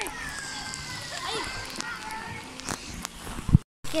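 Outdoor pool ambience: overlapping distant voices of people and children with some water sloshing. Near the end a sharp knock is followed by a brief total dropout of sound.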